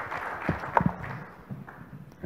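Brief, scattered audience applause in a conference hall, dying away, with a few sharp claps about half a second to a second in.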